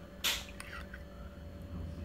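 One short slurp from a glass of instant coffee with dunked Oreo, about a quarter second in, followed by a faint low room hum.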